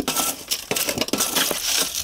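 A metal hand scoop digging and scraping through gritty compost-and-sand potting mix in a metal tub, making a quick run of crunching scrapes and small clinks of metal on metal.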